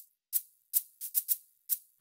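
Short, crisp shaker hits in a loose rhythm, about three a second with some in quick pairs, the percussion of a logo intro jingle.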